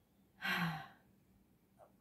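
A person's short, breathy sigh about half a second in, with a faint voiced tone sliding down at its end.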